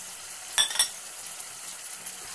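Mutton and spices frying in hot oil in a pressure cooker: a steady sizzle, with two sharp clinks just after half a second in.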